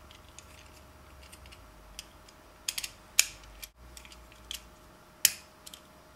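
Light plastic clicks and taps as two snap-together plastic gearbox housings are handled and clipped together: a handful of scattered clicks, the sharpest about three seconds in and another just past five seconds.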